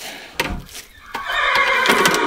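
A horse whinnying, a long loud neigh starting about a second in, added as the sound of the rearing horse; a short thump comes just before it.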